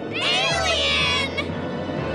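A high-pitched, wavering cartoon cry of fright lasting just over a second, over a dramatic background score.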